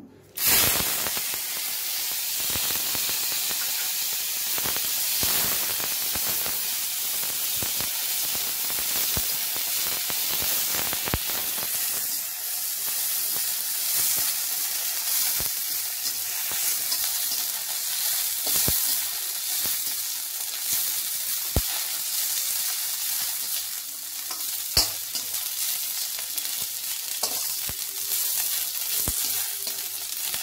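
Dried red chillies frying in hot oil in a steel kadai, sizzling steadily with scattered crackles and pops. The sizzle starts loudly about half a second in.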